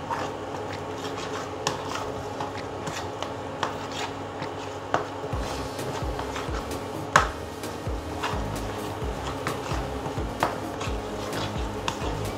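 Metal spoon clicking and scraping against a bowl while stirring a thick chili masala paste, with sharp clinks every second or two, over background music.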